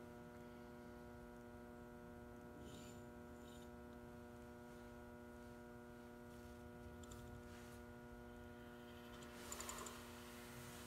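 Near silence filled by a steady electrical mains hum, a stack of even tones. Faint handling scuffs near the end, from the dial-indicator stand being shifted on the bench.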